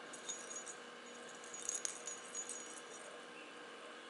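Bell inside a hollow plastic cat-toy ball jingling faintly in a few short bursts as the ball is moved, loudest a little under two seconds in.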